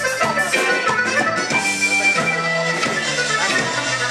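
Tejano conjunto band playing live with no vocals: a button accordion carries the melody over bajo sexto, electric bass and drum kit, with a steady dance beat.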